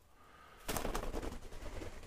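A pet bird's wings flapping in a sudden quick flurry against an artificial Christmas tree, with rustling of the tree's branches that trails off more softly.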